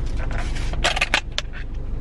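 A clear plastic lid being pried off a takeout food container: a cluster of sharp crackles and snaps about a second in, over a low steady hum.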